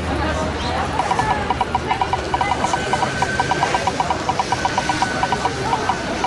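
Spinning-wheel sound effect of an online wheel picker: rapid, even ticking, about eight ticks a second, starting about a second in and stopping near the end as the wheel spins to its next pick.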